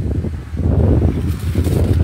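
Loud, irregular low rumble of wind buffeting a phone's microphone.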